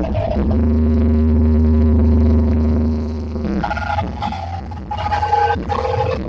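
Loud music with heavy bass from a truck-mounted carnival sound system's speaker stacks. For the first three and a half seconds it is a steady held chord over a deep bass, then it changes to a busier, broken pattern higher in pitch.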